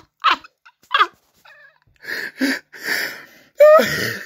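A man laughing helplessly: a few short laughs that slide in pitch, then wheezing, breathy gasps, and a louder high laugh near the end.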